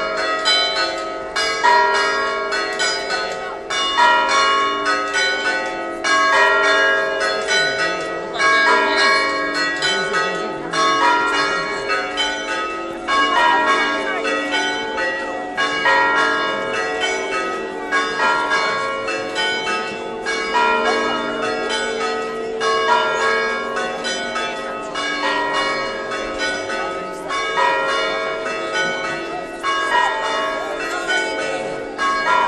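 Several church bells ringing in a continuous peal, strokes of different pitches following each other a few times a second over their lingering hum.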